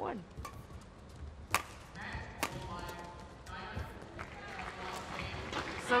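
Badminton rally: rackets striking the shuttlecock, several sharp smacks about a second apart, the loudest near the start and around one and a half and two and a half seconds in.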